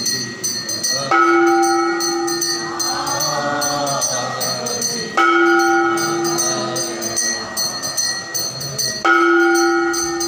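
Aarti music: a deep temple bell struck three times, about four seconds apart, each stroke ringing on and slowly fading. Under it runs a constant fast jingling of small bells, with voices singing.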